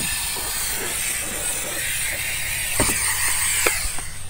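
Bissell SteamShot handheld steam cleaner hissing steadily as it jets steam onto a car door panel.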